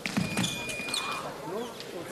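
Sabre blades clashing and fencers' feet striking the piste, then the electronic scoring machine sounds a steady beep for about a second, signalling a touch. Voices call out around it.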